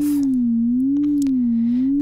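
Absynth 5 software synthesizer sounding a sine tone whose frequency is modulated by a slow sine wave: the pitch wanders smoothly up and down, about one swing a second. A steady lower tone sits beneath it.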